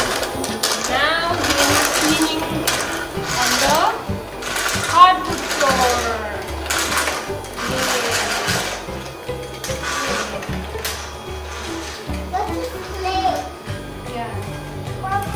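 Casdon Dyson toy vacuum cleaner's small motor whirring as it is pushed across a wooden floor, with background music over it.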